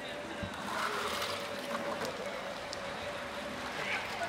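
Water splashing and sloshing at the edge of an orca pool, loudest about a second in and again near the end, over a faint steady hum.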